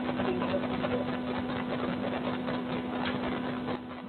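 Steady low hum over a hiss of room noise. The hiss drops a little near the end.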